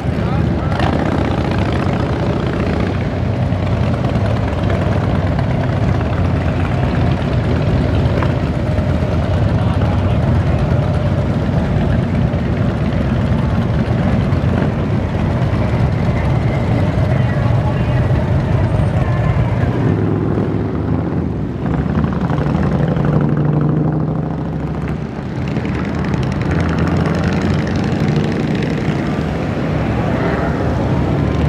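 Engines of a line of touring motorcycles riding past one after another, a loud steady rumble whose pitch shifts as each bike goes by.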